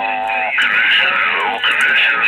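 Voices of distant stations received on a CB radio in lower-sideband mode, coming through the radio's speaker thin, garbled and mixed with static. A held voice note lasts about the first half second, then talk from a signal growing stronger on the meter.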